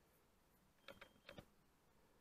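Near silence broken by a few faint clicks, in two small groups about a second in, as the watch's upper crown is turned to rotate the inner dive bezel.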